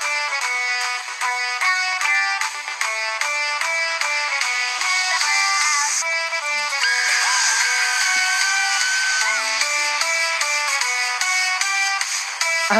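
Upbeat cartoon soundtrack music carried by a brass melody of short, quick notes, with a long high held tone from about seven to nine seconds in.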